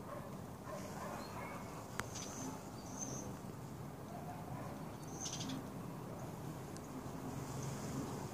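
Faint outdoor ambience: a steady low hum with a few short, high bird chirps, one of them a quick trill near the middle, and a single sharp click about two seconds in.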